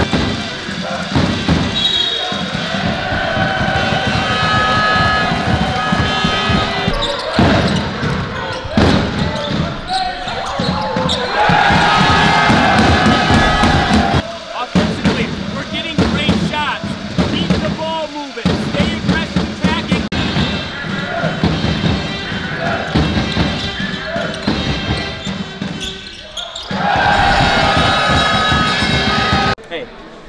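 A basketball bouncing on a hardwood court, with voices in the hall.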